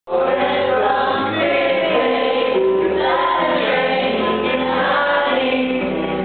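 A mixed group of young men and women singing together in chorus from song sheets, holding long notes that change every second or so.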